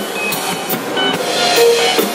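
Live rock band playing an instrumental passage: electric guitars and electric bass over a drum kit keeping a steady beat, with no singing.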